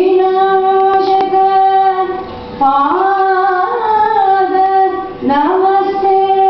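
A woman singing long held notes in Carnatic style over a steady drone. The first note breaks off about two seconds in, she glides through a short phrase, then settles on a new held note near the end.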